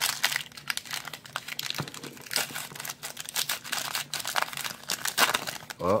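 The wrapper of a 2016 Score football card pack being torn open and peeled back by hand, crinkling in irregular bursts.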